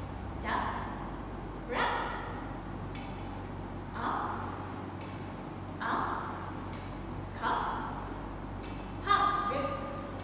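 A woman's voice saying short single words one at a time, six in all, about one every second and a half to two seconds, over a steady low hum.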